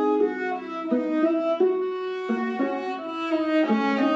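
Two violas playing a bowed duet in two parts, with a lower and an upper line moving through sustained notes that change every half second or so.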